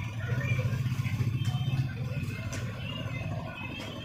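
A steady low engine hum in the background, with a few light metallic clicks as the angle grinder's armature and gear housing are handled.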